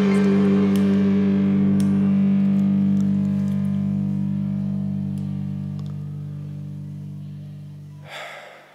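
Karaoke backing track of a K-pop ballad between sung lines: a held chord rings on and slowly fades away over the last five seconds.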